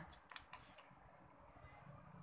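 Faint small clicks from a Sofirn SC31B flashlight's tail cap being twisted off the body by hand, a few in the first second, then near silence.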